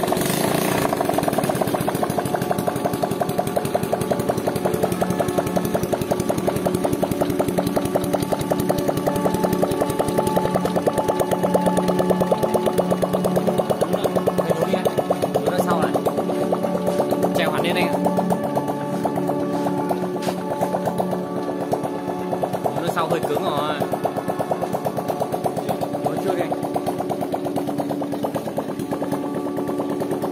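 A 125cc single-cylinder motorcycle engine in a homemade tube-frame ATV, idling steadily with a rapid, even firing beat.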